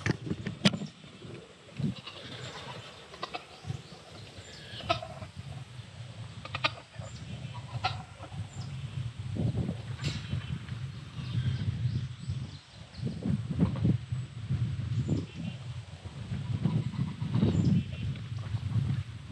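Outdoor farm ambience: a low, uneven rumble, scattered clicks and knocks, and a few faint farm-animal calls. The sharpest knock, just under a second in, comes from the camera being set on a wooden fence rail.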